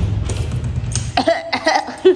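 A person coughing hard and close, a dense rough coughing fit lasting over a second, then a short vocal sound near the end.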